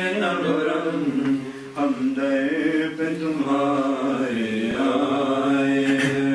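A noha, the Urdu lament for Muharram, chanted in long held notes that bend in pitch, with short breaks between phrases.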